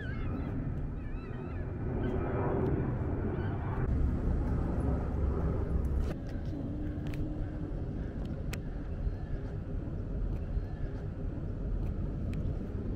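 Outdoor field ambience with a low, steady engine rumble in the distance, and a brief single-pitched hum about six and a half seconds in.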